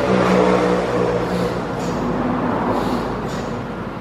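A motor vehicle's engine passing close by, loudest in the first second or so and then fading away.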